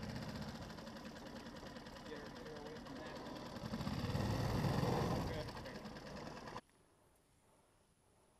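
Small boat outboard motor running with a fast, even putter, growing louder for a second or so past the middle, then cutting off suddenly near the end.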